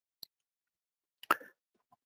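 A pause in a presenter's speech, nearly silent, broken by a faint tick and then, about a second and a quarter in, one short mouth click or lip smack into the microphone.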